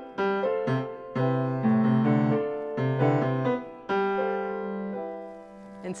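Steinway grand piano playing the piece's opening theme low in the register over a steady left-hand beat, chords struck in quick succession, then a last chord held and fading away for the final two seconds.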